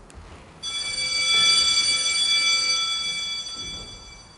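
A bell struck once about half a second in, ringing with several clear high tones that slowly fade away over the next few seconds.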